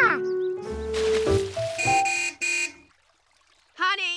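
A vehicle horn honks twice, briefly, about two seconds in, over light background music. A cartoon monkey's 'ooh'-like call sounds at the start, and monkey chattering sounds near the end.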